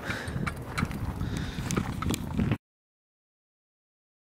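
Irregular knocks and scuffs of footsteps on a concrete sidewalk and a handheld phone being moved. The sound cuts off to silence about two and a half seconds in.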